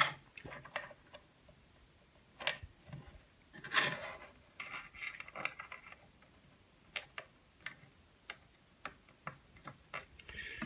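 Small sharp clicks and taps of steel pocket screws being set by hand into pocket holes in a wooden shelf board, with a brief rustle of handling about four seconds in.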